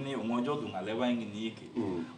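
A man speaking: speech only, with no other sound.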